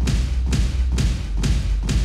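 A large crowd of children stomping their feet on the floor in time with a backing track, a heavy thump about twice a second over steady bass.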